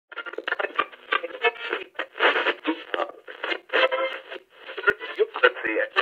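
A voice in short, choppy speech-like bursts, thin and tinny as if heard over an old radio, with no clear words.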